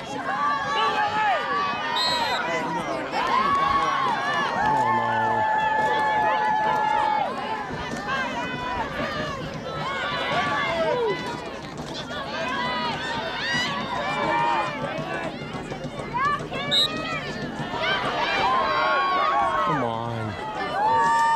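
Spectators shouting over one another at a field hockey game, several voices at once, some calls long and drawn out.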